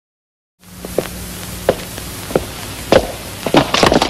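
Silence for about half a second, then a steady hiss of an old film soundtrack with scattered thumps and knocks of schoolboys scuffling, the blows coming faster near the end.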